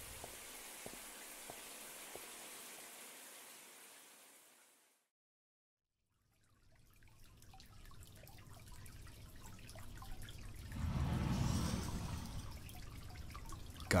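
Shower water running and dripping. It fades out to dead silence for about a second and a half near the middle, then fades back in with small drips and a louder swell of water noise about eleven seconds in.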